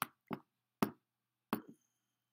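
Four short, dull knocks at uneven intervals.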